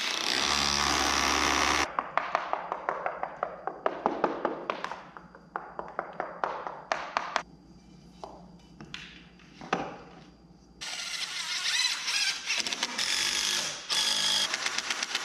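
Cordless impact driver driving long masonry screws through a speaker bracket into concrete and brick, in bursts: a run of a couple of seconds at the start, then rapid sharp hammering clicks, a quieter pause, and another run starting about three seconds before the end.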